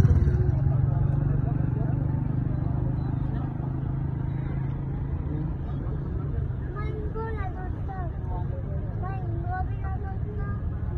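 Steady low engine and road rumble of a moving vehicle, easing slightly in level. From about seven seconds in, people's voices and calls rise over it.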